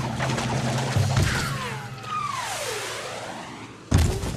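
Cartoon sound effects: a low motorboat drone that breaks off in a splash about a second in, then a long falling whistle, and a loud crash near the end.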